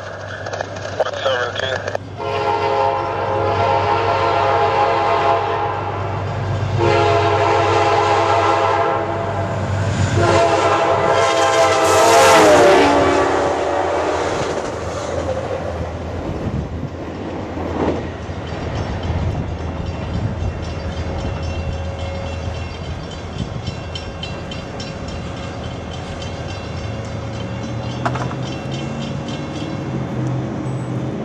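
Amtrak GE Dash 8 locomotive 503's five-chime Nathan K5LA air horn sounds a run of long blasts as the train approaches, and the last blast drops in pitch as the locomotive passes. The train then rolls by with a steady rumble and clatter of wheels on rail.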